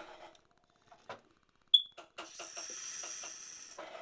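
A sharp clink of metal against a drinking glass, then about a second and a half of steady hissing sizzle as a hot gold tube is quenched in the glass of water.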